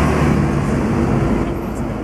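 Loud, steady city street traffic noise with the hum of a vehicle engine running close by.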